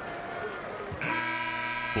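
Arena's end-of-game horn sounding about a second in: one steady, low blare that holds without changing pitch, marking the expiry of the game clock.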